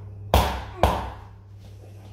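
A mallet striking a wooden block held against a person's back: two sharp knocks about half a second apart.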